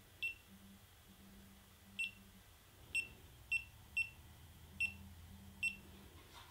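GoPro Hero3 camera beeping as its front mode button is pressed: seven short, high beeps at uneven intervals, each press stepping the camera to its next mode on the way to the settings menu.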